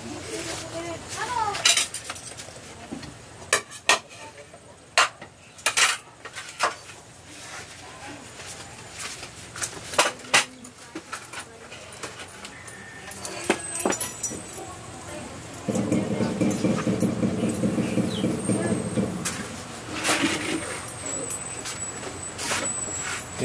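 Dishes and kitchenware clinking and knocking in scattered sharp strikes. A steady low drone runs for about three seconds near the end.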